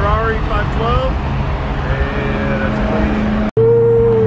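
A car driving at speed, heard from inside the cabin: a steady engine drone and road rumble, with pitched, voice-like gliding sounds over the first second.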